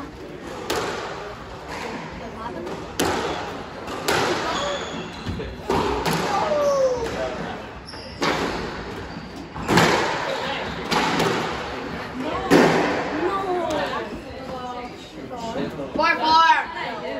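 Squash rally: the ball struck by rackets and smacking off the walls and glass, with sharp hits every one to two seconds. Short squeaks of the players' court shoes on the hardwood floor come between the hits.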